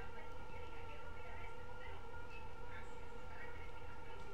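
A steady hum, with faint, indistinct sound from a small television playing in the room.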